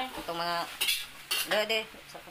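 Cutlery and dishes clinking, with two sharp clinks about a second and a second and a half in.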